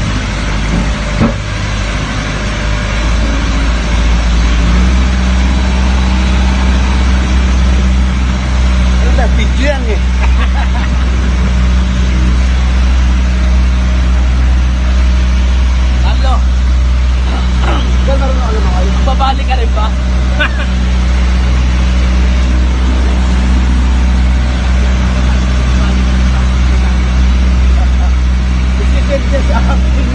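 Engine of a motorized outrigger boat (bangka) under way, a steady low drone that grows louder and settles about five seconds in.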